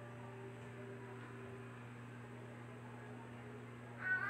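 Faint, steady low hum over quiet room noise.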